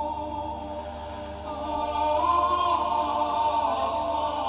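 Choral music: a choir singing long held chords, growing louder about halfway through.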